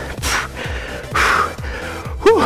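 A man breathing hard, tired from a slow set of push-ups: two loud breaths about a second apart. Background music with a steady beat runs underneath.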